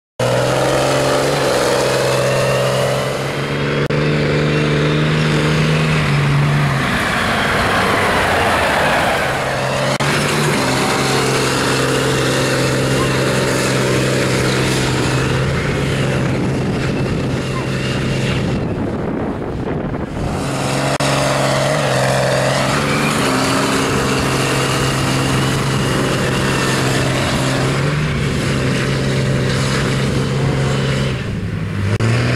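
Mud-bog pickup truck's engine held at high, steady revs while its tyres churn through a mud pit, easing off briefly a few times.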